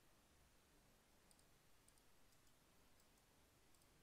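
Near silence: faint room tone with a few very faint computer mouse clicks.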